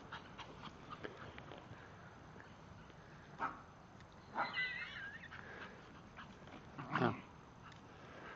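Small dogs playing: a short yelp a few seconds in, then a high wavering whine, and a louder short bark near the end.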